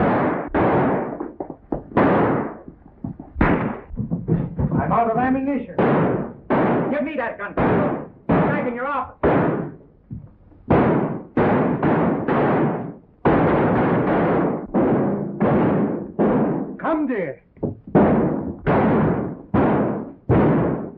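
A fight's sound effects: a rapid, loud run of sharp blows and thuds, more than one a second, each cut off quickly.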